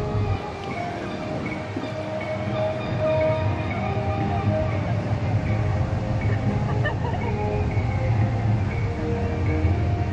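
Background music with held notes that change pitch in steps over a steady low bass.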